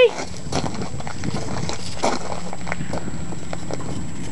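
Irregular footsteps on loose gravel: a scattering of short, uneven crunches and clicks.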